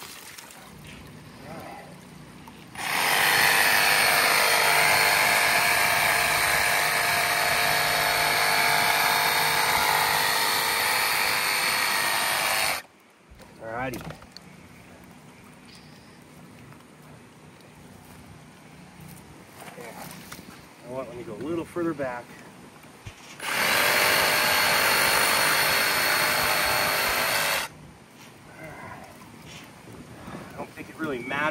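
Cordless power tool running at full speed in two long stretches, first about ten seconds and then about four, cutting through a broken PVC water pipe.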